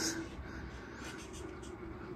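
Redcat Gen 8 V2 scale crawler's electric motor and geared drivetrain running faintly with a low, scratchy mechanical noise as it crawls slowly down a wooden ramp. The noise is the constant drivetrain noise typical of this crawler, not a fault.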